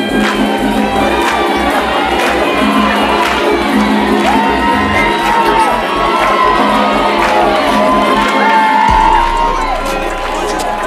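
A hip-hop track with a steady beat plays over the hall's sound system. A standing crowd cheers over it, with whoops and drawn-out shouts growing from about the middle.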